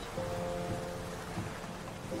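Shallow waves washing around wooden pier posts: a steady rush of water. Soft held notes of background music sit under it.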